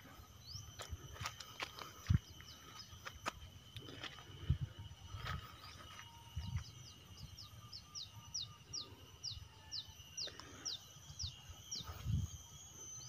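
Faint outdoor field ambience: a short, high, falling chirp repeated about twice a second through most of the stretch, over a faint steady high hum, with a few soft low bumps.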